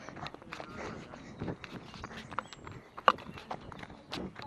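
Footsteps on a dirt and gravel forest trail, heard as a run of irregular crunching steps, with a sharper knock about three seconds in.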